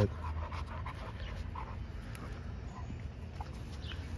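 Dogs panting as they tug and mouth a rope toy.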